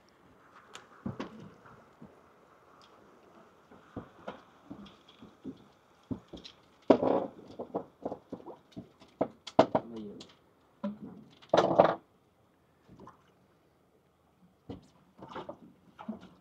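Scattered clicks and knocks from a fishing reel and tackle being handled, with two short louder sounds about seven and eleven and a half seconds in.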